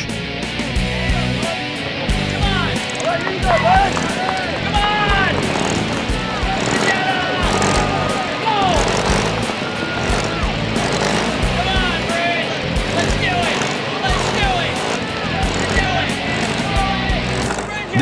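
Background music with a steady low beat under a crowd of people shouting and cheering, many short rising and falling calls.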